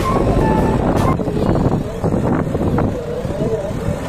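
Diesel engine of a JCB 3DX backhoe loader running loud under load while it works in heavy mud, with a sharp knock about a second in. People's voices are heard over it.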